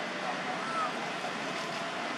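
Steady outdoor background rush with no clear single source, and a faint short chirp under a second in.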